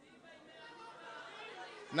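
Faint murmur of voices in a large hall, with a man's amplified voice starting loudly right at the end.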